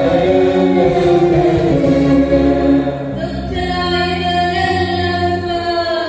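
A girl singing a solo melody through a PA system, holding long notes, with a small string ensemble accompanying her. The notes change about halfway through.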